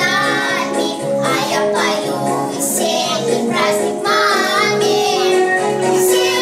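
A group of young girls singing a song together over instrumental accompaniment.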